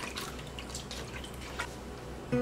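Red chili peppers dropped by hand into an enamel pot of water, making several small splashes and drips spread through the moment.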